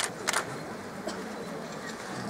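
A few sharp clicks over quiet hall ambience: one at the start, then a quick pair about a third of a second in.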